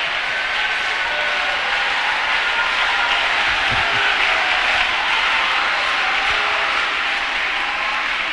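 A large congregation applauding steadily.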